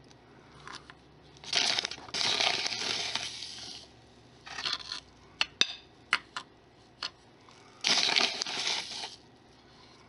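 A metal spoon scooping and pushing fine sand around a terracotta dish: gritty scraping in three spells, with a few sharp clinks of the spoon against the dish in between.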